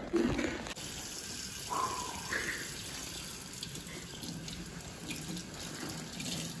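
Kitchen sink faucet running steadily, its stream splashing onto a head of bleached hair being rinsed under it, starting about a second in.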